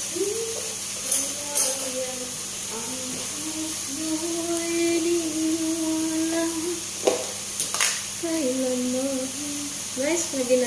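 A woman humming a slow tune with long held notes, over a steady hiss. A few sharp clicks come about a second in and again around seven seconds.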